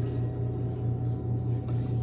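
Steady low hum of a room air conditioner, unchanging throughout.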